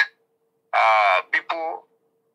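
A man's voice speaking a short phrase briefly in the middle, between pauses, with a faint steady hum beneath.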